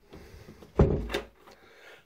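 Interior panelled door being worked by its round knob and pushed shut, the latch clicking into place: a sharp knock just under a second in, then a second, lighter click shortly after. The latch is catching properly on the newly fitted door.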